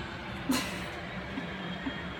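A steady low hum of room noise, with one sharp knock about half a second in and two faint clicks later, typical of a phone camera being handled.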